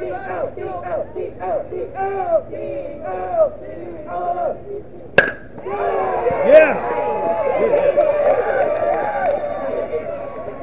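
Youth players and spectators chanting and yelling in a repeating cadence. About five seconds in, a baseball bat hits the ball with one sharp crack, followed by louder overlapping shouting and cheering.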